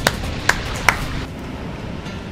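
Three sharp hand claps, about half a second apart, over a low steady background noise.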